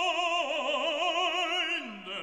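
Operatic singing: one voice holding long notes with wide vibrato, stepping down in pitch about half a second in and sliding lower near the end.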